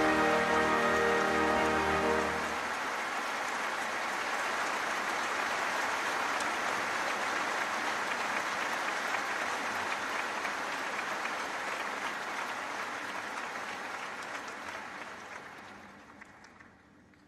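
The opera's orchestra holds a final chord that ends about two seconds in, and a large audience breaks into sustained applause, which fades away near the end.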